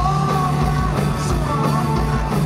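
Rock band playing live through a club PA: electric guitars, electric bass and drums with a steady kick-drum pulse, under a held, wavering sung melody.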